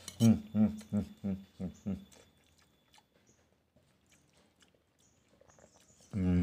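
A man's short, repeated voiced pulses, about three a second, fading out over the first two seconds, followed by faint clicks of a metal spoon against a ceramic plate as he eats.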